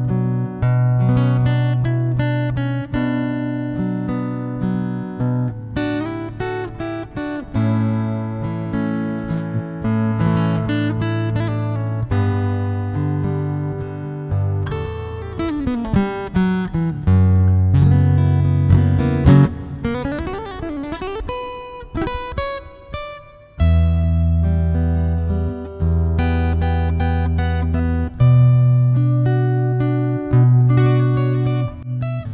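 Electroacoustic guitar fitted with a Planet Waves O-Port soundhole cone, played fingerstyle: picked melody notes over bass notes, recorded with effects added.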